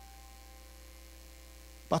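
Steady low electrical mains hum from the sound system, heard in a pause between spoken phrases.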